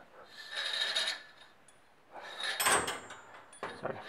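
Motorcycle fork spring and chrome fork tube being handled as the spring is fitted into the tube: a soft sliding scrape, then a louder metal clink and rattle about two and a half seconds in.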